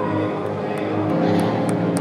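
Live church music: a soloist singing with keyboard accompaniment, holding sustained notes. A few faint clicks sound in the second half.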